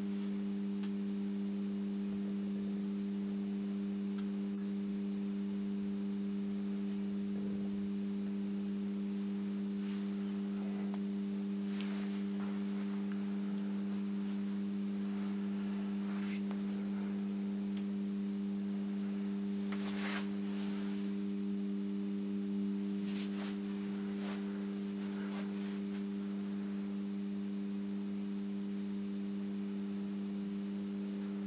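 Steady electrical hum from the floodlights' magnetic high pressure sodium ballasts as the two discharge lamps warm up. It is a deep drone with a few overtones above it, and a few faint clicks come through during it.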